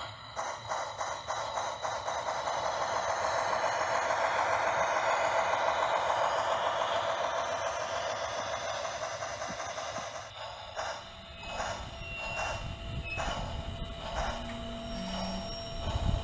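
Lionel HO scale Berkshire model steam locomotive's onboard speaker playing rapid steam chuffing as the train runs, swelling and then fading. About ten seconds in it gives way to lighter, sparser clicks and a few brief tones.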